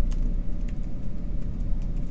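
Computer keyboard typing: a string of light keystroke clicks, several a second, over a steady low hum.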